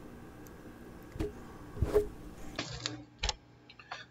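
A few light clicks and knocks, four or so spread across a few seconds, as the foam and the sliding fence of a hot wire foam cutting table are handled and adjusted.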